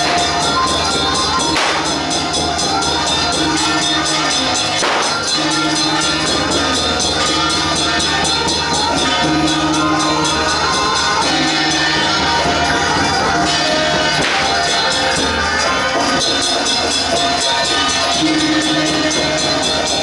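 Taiwanese temple-procession path-clearing drum ensemble (開路鼓) playing: big drum, gong and metal percussion struck in a fast, dense, steady rhythm, with a held melody line running over it.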